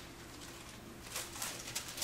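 Faint rustling with a few soft brushes in the second half, over quiet room tone: Bible pages being turned to find a passage.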